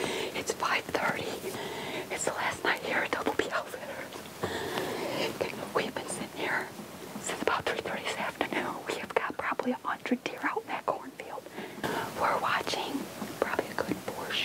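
A woman whispering.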